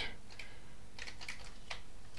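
Keys of a Commodore 128 keyboard being pressed: a handful of light, unevenly spaced key clicks as the cursor is stepped along a command line to edit it.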